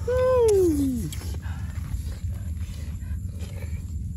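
A single loud animal call that slides steadily down in pitch over about a second, near the start, over a steady low rumble.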